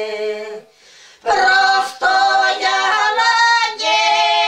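Three older women singing a traditional folk song together, unaccompanied. A held note ends a little under a second in, there is a short break for breath, and the singing starts again loudly.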